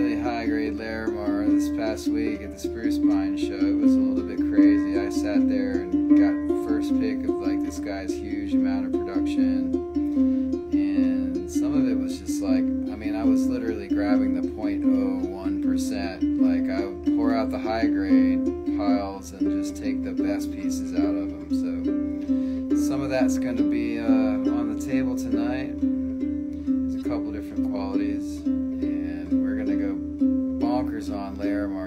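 Gourd banjo being played: a steady, rhythmic run of plucked notes cycling over a few low pitches, with sharp string strikes all through.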